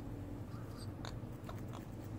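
Soft, irregular beak clicks and small crackling nibbles from two pet parrots allopreening, over a steady low hum.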